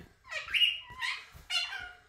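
Young puppy crying: three short, high-pitched whimpering cries in quick succession.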